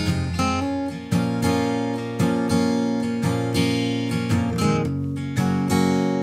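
Background music: acoustic guitar strummed in an even, steady rhythm, an instrumental stretch of a song with no singing.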